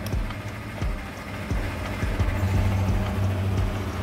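Petrol station fuel dispenser starting to fill a car: a few handling clicks, then about two seconds in the pump sets in with a steady low hum.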